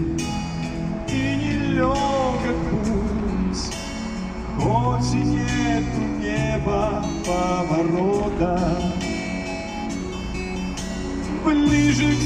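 Karaoke backing track of a Russian pop song playing loudly through an Eltronic Fire Box 1000 portable party speaker: an instrumental break with steady bass notes and a melody line that slides and wavers in pitch.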